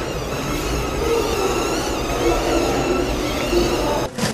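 Small tracked robot driving across a tiled floor, its electric gear motors whirring steadily with a slightly wavering pitch over a low rattling rumble of the tracks, as it follows a path drawn on a smartphone.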